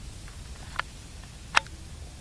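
Dry reed stalks crackling as they are pushed through at close range: two short sharp cracks, a faint one just before the middle and a louder one near the end, over a low rumble.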